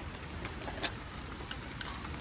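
Steady hiss of rain, with a few light clicks as items in a car's center console are handled.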